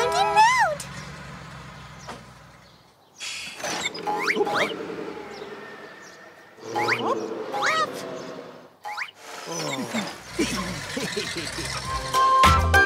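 High-pitched cartoon character voices making short wordless exclamations in three or four bursts, with quieter gaps between them. A musical chord fades out in the first second.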